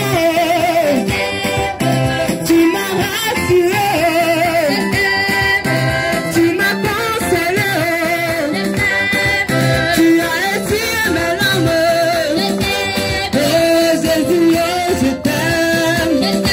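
A church congregation singing a praise song together, with hand clapping, loud and steady throughout.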